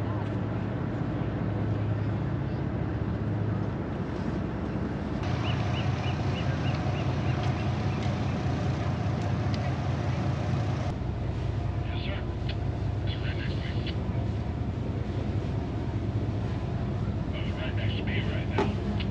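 A steady low rumble with indistinct voices and a few short, high chirps. The sound changes abruptly about 5 and 11 seconds in.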